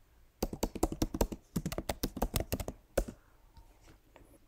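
Computer keyboard typing a short search phrase: a quick run of keystrokes with a brief break partway through, then one heavier final keystroke about three seconds in.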